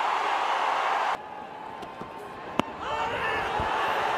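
Cricket stadium crowd cheering a wicket, cut off abruptly about a second in. Quieter ground noise follows, with a single sharp crack of the ball at the batter's end about halfway through, then players shouting an appeal as the crowd noise rises.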